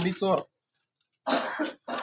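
A man's voice finishing a phrase, then a single short cough about a second and a half in, just before he speaks again.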